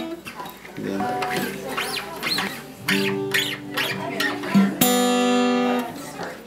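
Steel-string acoustic guitar strings plucked one at a time while being stretched and brought back to pitch: three separate ringing notes, the loudest near the end, with faint high squeaks between them.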